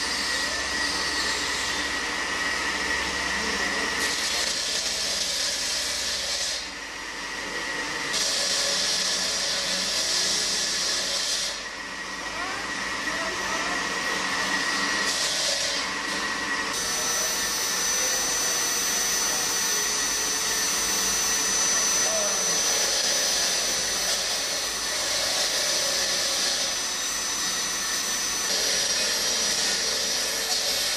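Electric hand-held rotary grinders running as jade is carved, a steady high whining and grinding noise. It drops away briefly a few times in the first half, and a thin high whistle holds steady through most of the second half.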